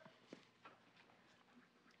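Near silence, with a couple of faint ticks.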